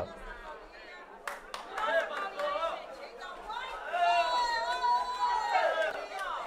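Faint, off-microphone speech: a man's voice and chatter heard distantly in the hall, much quieter than the close-miked voice just before, with a single click about a second in.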